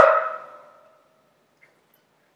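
A man's drawn-out vocal exclamation, held on one pitch and fading out within the first second, then near silence.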